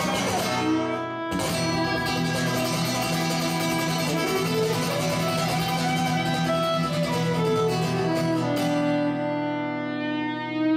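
Violin and acoustic guitar playing together: the guitar strums under a bowed violin melody, with a brief break about a second in and a rising slide on the violin near the middle.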